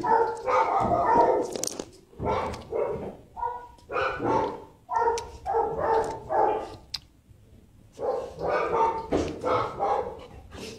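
Dog barking repeatedly, short barks about every half second, with a pause of about a second a little past the middle before the barking resumes.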